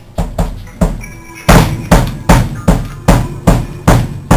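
A drum kit being played: a few scattered hits, then from about a second and a half in a steady beat of roughly two and a half heavy strikes a second.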